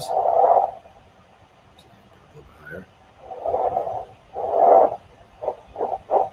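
Electrical activity of forearm muscles, picked up by skin electrodes, amplified and played as sound: a burst of noise with each clench of the fist. There is one burst at the start, two longer ones in the second half, and shorter ones near the end.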